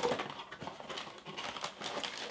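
Handling noise of a cardboard motherboard box and a plastic anti-static bag: a string of light rustles and small knocks as the box's cardboard insert is folded back and the bagged board is gripped.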